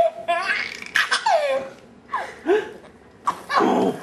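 A toddler laughing in a run of short, high-pitched bursts, most of them sliding down in pitch, ending in a longer breathy burst of laughter near the end.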